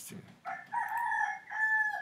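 A rooster crowing: one long call in two parts, lasting about a second and a half, the first part wavering in pitch and the second held steadier.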